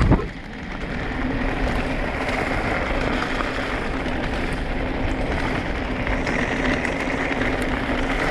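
E-mountain bike riding over a gravel dirt trail: tyres crunching and rolling over loose stones with steady wind rush, and a faint steady hum from the bike's electric motor. A brief loud knock comes right at the start, then a short dip in level.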